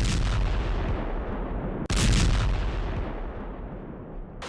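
Two heavy explosions in the sky about two seconds apart, the blasts of an air-defence interception of a drone, each followed by a long rolling rumble that fades away.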